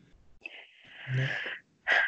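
A person's breathy sound: a drawn-out hiss of breath lasting about a second, starting sharply, with a brief low voiced part.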